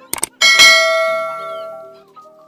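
Subscribe-button animation sound effect: two quick mouse clicks, then a bright notification-bell ding that rings and fades over about a second and a half.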